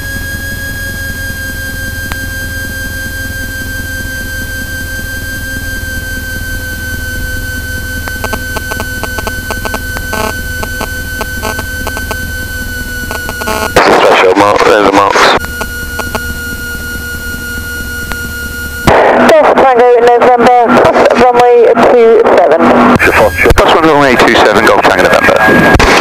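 Socata TB10's piston engine at low power as the aircraft taxis after landing, heard through the cockpit intercom as a low hum under a steady high whine that drops slightly in pitch near the middle. Loud radio voice transmissions cut in briefly around the middle and again for the last seven seconds.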